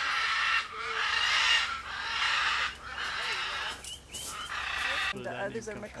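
White cockatoo screeching: about five harsh calls of roughly a second each, one after another.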